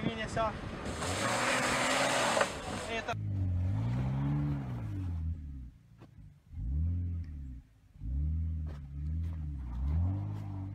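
A loud rushing hiss for the first three seconds, then a BMW X5's engine revving up and down in repeated surges, dropping off briefly twice, as the SUV pushes through deep snow and gets hung up on it.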